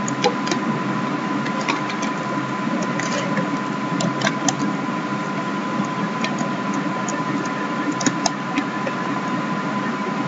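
Scattered computer keyboard keystrokes, a few sharp clicks at a time, over a steady background hum with a faint thin tone in it.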